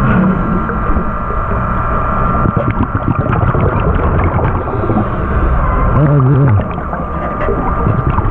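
Underwater noise inside a shark cage: a constant low rumble and bubbling from the divers' air bubbles, with scattered small clicks and a thin steady tone above it. About six seconds in there is a short, low, muffled pitched groan lasting about half a second.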